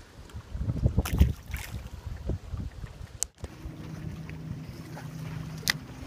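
Irregular knocking and wind buffeting on the microphone as a small rock bass is handled and released. After a sudden cut, a boat motor hums steadily, with a sharp click near the end.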